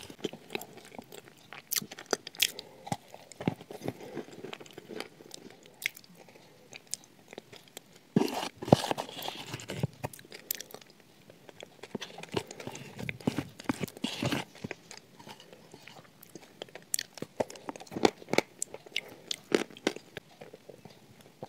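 Close-up eating sounds: crumbly shortbread coated in chocolate spread being bitten, crunched and chewed, with many small crackles and clicks. A louder bout of crunching comes about eight seconds in.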